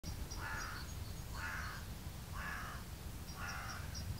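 A bird calling four times, about a second apart, with faint high chirps from small birds and a low steady rumble beneath.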